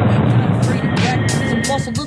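A hip-hop track playing back: a dense, noisy, bass-heavy break between rapped lines, with sharp percussion hits coming in about half a second in and the rapped vocal returning near the end.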